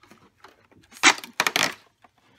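Cardboard and paper rustling and scraping twice, about a second in, as a small kraft-paper box is pulled from an advent calendar compartment and opened.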